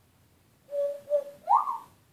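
African grey parrot whistling: a steady held note, then a short whistle that rises in pitch near the end.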